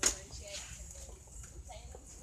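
Faint background voices over a low steady murmur, with a single sharp click right at the start.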